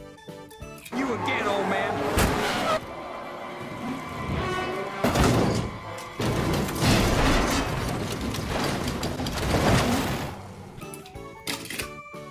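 Film soundtrack of an animated stock car crash: the race car tumbling end over end with impacts and smashing metal, over music and voices.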